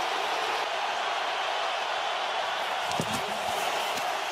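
Stadium crowd noise, steady and unbroken, with a brief faint voice about three seconds in.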